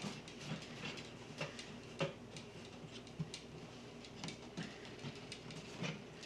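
Faint, irregular light clicks and taps of hands working the canopy hatch onto an RC catamaran's hull, one a little sharper about two seconds in.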